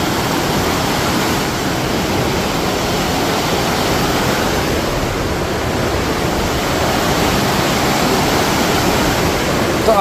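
Whitewater rushing out through the sluice gates of a canal barrage: a loud, steady rush of churning water with no break.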